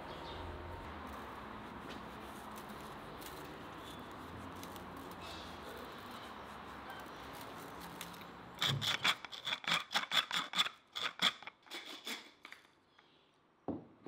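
Hand pepper mill twisted to grind peppercorns: a quick, irregular run of crunchy clicks starts about two-thirds of the way in and stops about a second and a half before the end. Before it there is only a steady low hiss.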